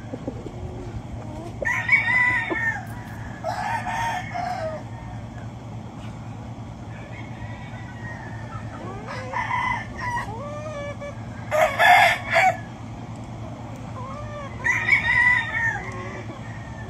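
Gamefowl roosters crowing about five times, the loudest crow about twelve seconds in, over a steady low hum.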